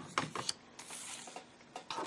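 Cardstock handled on a plastic paper trimmer: a few light taps in the first half second, then a short paper rustle about a second in.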